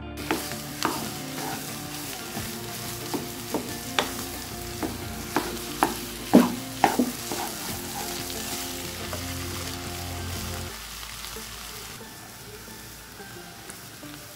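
Grated carrot halwa sizzling as it is fried down in a nonstick frying pan, stirred with a wooden spatula. A steady frying hiss runs under irregular knocks and scrapes of the spatula against the pan, the loudest about six seconds in. The sizzle drops a little near the end.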